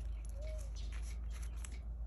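Faint handling of paper journal pages: fingers moving over and touching the pages, with a few light ticks, over a low steady hum. A brief faint tone sounds about half a second in.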